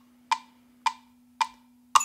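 GarageBand's metronome click playing the one-bar count-in before recording: four short clicks a little over half a second apart, the last one louder as the recording bar begins.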